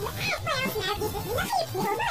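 Several overlapping voices, electronically distorted and pitch-shifted, warbling up and down continuously without clear words.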